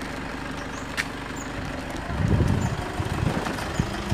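A motor vehicle engine idling with a low, even pulse. A louder, rougher low rumble comes in about halfway through.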